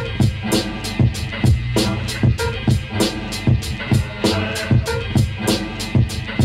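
A hip hop track's instrumental beat with no rapping: a steady drum pattern with sharp hits about four times a second over a sustained bass line.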